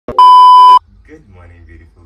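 A single loud electronic beep: one steady, high, pure tone lasting about half a second, just after a short click near the start. Faint talk and a low hum follow.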